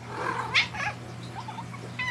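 Domestic cat giving a couple of short, soft calls in the first second, then falling quiet.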